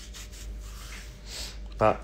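Screw being turned by hand with a screwdriver through a metal radiator bracket into a wall plug, making a few short rubbing, scraping strokes.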